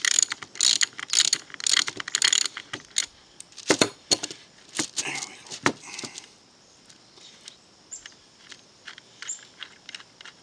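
Metal clicking and rattling as a bolt is unscrewed from a T-nut set in wood: quick runs of clicks for the first few seconds, three louder clinks around the middle, then only faint ticks.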